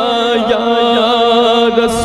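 A man singing a naat, drawing out a long, wavering melismatic note without words, over a steady held drone.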